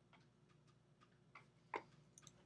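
A few faint computer mouse clicks over quiet room tone, with one sharper click near the end.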